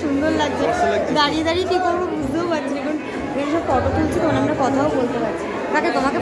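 People talking at once in a crowded, echoing hall: chatter of guests.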